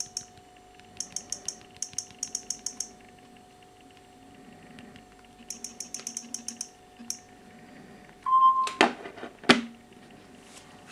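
Quick runs of sharp clicks, about five or six a second, from rapid repeated taps on a Samsung Galaxy A3's touchscreen: tapping the Android version entry over and over to bring up the Lollipop Easter egg. Near the end a short beep is followed by two loud knocks as the phone is handled against the table.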